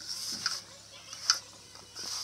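A hand mixing chopped bottle gourd with gram flour and turmeric powder in a steel bowl: soft, hissy rustling, with one sharp click a little past a second in.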